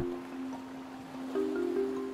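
Soft background music of sustained low notes, with a new note coming in about a second and a half in.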